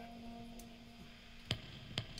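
A held note from the band fades out, then two sharp drum-kit clicks come about half a second apart, a count-in before the band comes back in.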